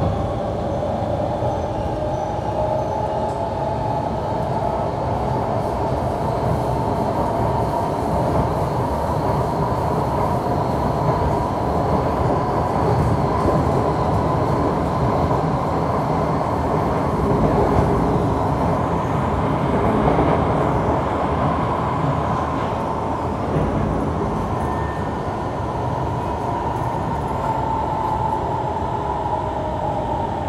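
Kawasaki C151 metro train running at speed, heard from inside the car: a steady rumble of wheels on rail, with a whine that holds around the same pitch throughout.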